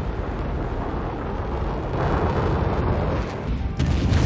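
Mercury-Atlas rocket engines at liftoff: a loud, steady, dense rumble that grows a little stronger about halfway through.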